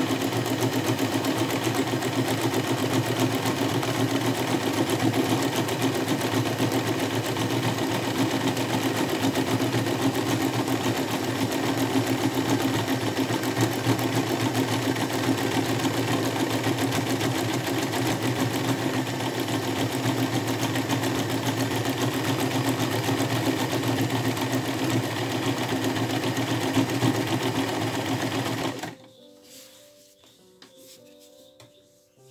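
Sewing machine running steadily, zigzag-stitching around the edge of a fabric appliqué piece. It stops about a second before the end.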